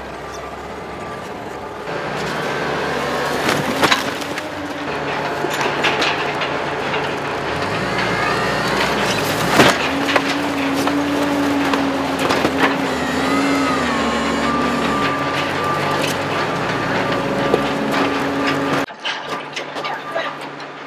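Forklift running in a steady industrial machinery din as it sets a shrink-wrapped pallet of boxes onto a baler's feed conveyor, with a few sharp knocks of the load. A hum from the machinery wavers in pitch from about halfway. The din cuts off about a second before the end.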